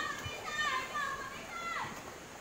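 High-pitched children's voices calling out in drawn, gliding shouts, with a falling call near the end, over a steady background hiss.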